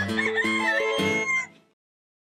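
A rooster's cock-a-doodle-doo crow over the final notes of a children's song, both ending about one and a half seconds in.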